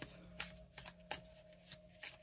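Tarot cards being handled: a handful of light paper clicks and flicks spread through, faint, over a low steady hum.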